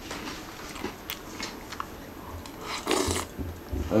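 A person eating ring cereal in milk: a few light clicks of a metal spoon against a ceramic bowl and chewing, with a short louder rustling burst about three seconds in.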